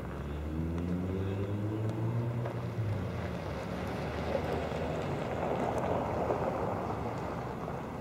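A motor engine humming low, fading out about three seconds in, then a steady rushing noise.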